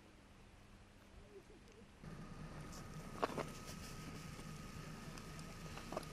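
Near silence at first; about two seconds in, faint outdoor street ambience begins, with a low steady hum, a thin steady high tone and one sharp click.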